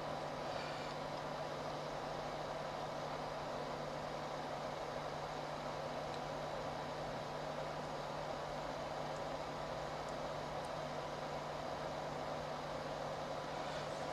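Steady background hiss with an even low hum, unchanging throughout: the room tone of a recording microphone while nothing else happens.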